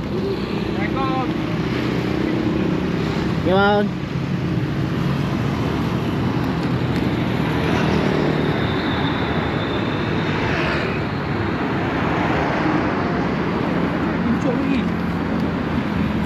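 Steady road traffic passing close by, a rush of engine and tyre noise that swells as vehicles go past in the middle, with brief snatches of voices in the first few seconds.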